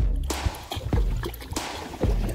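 Background music with a steady beat of about two per second.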